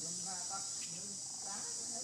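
Steady high-pitched insect drone of crickets or cicadas, with a person's voice saying a word or two over it.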